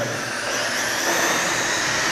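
Electric RC oval race trucks running laps together: a steady high motor whine with tyre and drivetrain noise.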